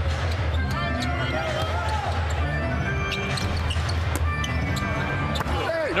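In-arena music with a heavy bass line, over a basketball being dribbled repeatedly on a hardwood court. The music stops near the end.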